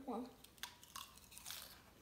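Crunching and chewing of a mouthful of crisp lettuce salad, a handful of short crunches about half a second to a second and a half in.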